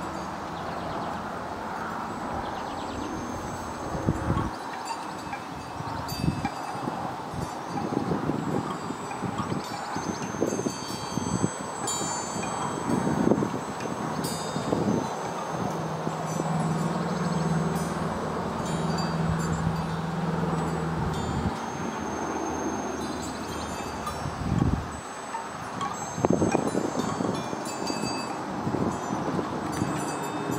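Wind chimes ringing on and off in a breeze, with gusts of wind buffeting the microphone. A low steady drone runs for about five seconds in the middle.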